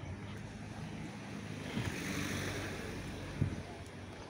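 Street traffic noise: a steady rush that swells over a couple of seconds in the middle and fades again, a car passing on the road.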